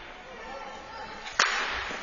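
A single sharp crack of a hockey puck being struck, a little past halfway through, echoing briefly in the ice rink. Faint voices underneath.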